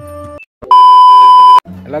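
A single loud, steady electronic beep lasting nearly a second, cutting in after a short gap as plucked-string intro music ends; a man's voice starts just after it.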